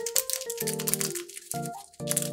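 Background music with held notes that stop and start, under close, irregular rustling and crackling of cut paper pieces being handled and pressed into place.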